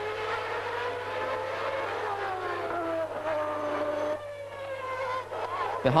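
Formula One car engine at high revs on the race broadcast, its pitch rising slowly and then falling away, easing off about four seconds in.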